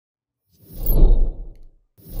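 Intro whoosh sound effect with a deep bass rumble: it swells in about half a second in, peaks around the one-second mark and fades away near the end.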